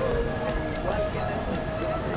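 Busy city sidewalk ambience: a murmur of passers-by's voices over steady street noise, with a faint held tone running throughout.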